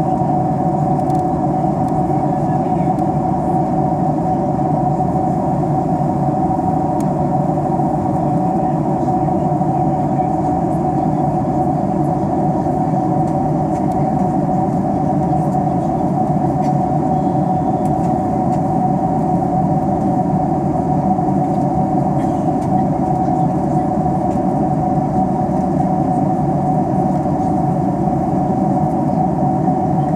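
Steady cabin noise of a jet airliner in cruise: the even drone of the engines and airflow, with a steady hum on top and no change in level.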